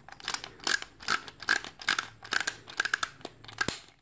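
Light clicking of hard plastic, about two or three clicks a second, from a UFT Ultimate Fighting Trashies toy launcher and spin-top figures being handled.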